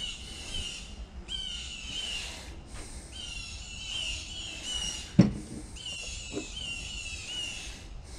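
A songbird singing short whistled phrases of slurred notes, repeated one after another every second or so. A single sharp knock about five seconds in is the loudest sound.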